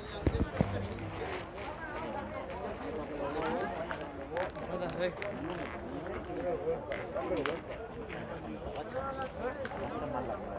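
Several people talking in the background, with a couple of sharp knocks about half a second in.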